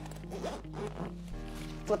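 The zipper on a Lululemon Throwback Triple Zip Duffel Bag's middle compartment being pulled closed, a faint rasp of fine clicks from the teeth.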